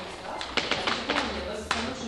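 Low, indistinct talk with several sharp taps, the loudest about three-quarters of the way through.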